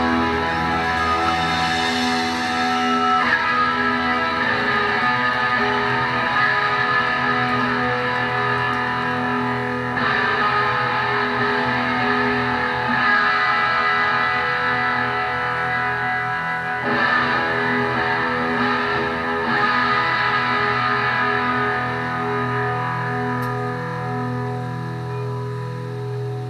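Live band's electric guitars and bass playing sustained chords that ring out, changing every few seconds, with no drums.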